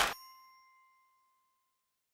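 The closing hit of an electronic outro jingle followed by a bell-like ding that rings out and fades, its lowest tone lasting almost two seconds.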